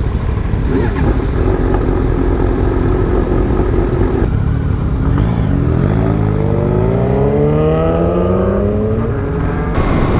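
Suzuki DRZ400SM motorcycle's single-cylinder engine running at a steady low speed, then, after an abrupt change about four seconds in, revving up as the bike accelerates away, its pitch rising steadily until near the end.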